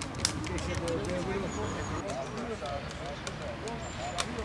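Many children and adults chattering at once in an open-air crowd, with no single voice standing out. A sharp click about a quarter second in is the loudest event, and a few fainter clicks follow.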